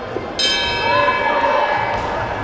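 Ring bell struck once about half a second in and ringing on, signalling the start of the round, over hall noise and voices.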